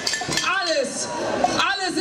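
A young man speaking German into a stage microphone, one continuous stretch of speech.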